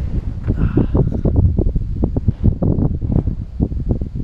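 Wind buffeting the microphone of a handheld action camera: a loud, uneven low rumble broken by many irregular knocks.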